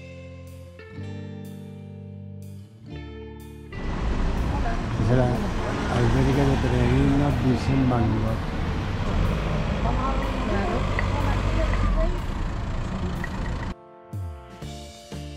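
Background music for the first few seconds, then about ten seconds of loud street sound: traffic rumble with indistinct voices. The street sound cuts off suddenly just before the end.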